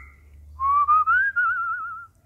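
African grey parrot whistling: a whistle rises about half a second in, then settles into a wavering, warbling tone that stops at the end.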